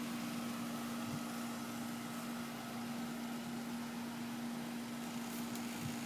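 Steady hum of an outdoor air-conditioning condenser unit running, with one low, even tone over a soft fan noise.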